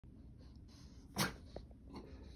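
A dog sneezing once: a single short, sharp burst about a second in.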